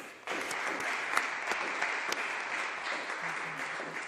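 Audience applauding after a speech ends, starting about a quarter second in and holding steady, a dense patter of many hands clapping.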